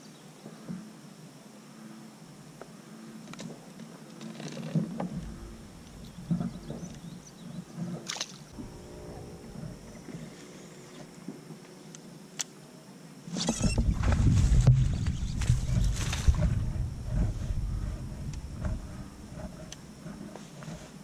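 A hooked bass splashing and thrashing as it is hauled out of thick grass into the kayak. It starts suddenly a little past halfway as a loud stretch of splashing and rustling over low rumbling, then fades near the end. Before it come only scattered light clicks.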